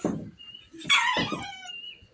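A dog barking twice, the second bark about a second in and louder.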